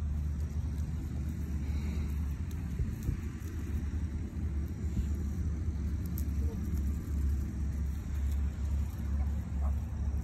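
A steady low rumble that flutters in strength, with no clear pitched sound or sharp knocks over it.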